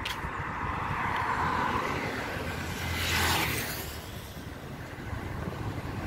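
Road traffic on a city street: cars driving past, one going by close about three seconds in.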